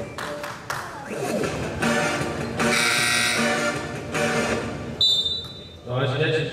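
Music playing with held notes, and about five seconds in a single sharp referee's whistle blast lasting just under a second, stopping play for a foul before free throws.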